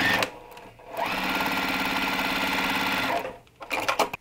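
Electric sewing machine stitching a seam through layered quilt fabric in one steady run of about two seconds. It starts about a second in and stops shortly after three seconds.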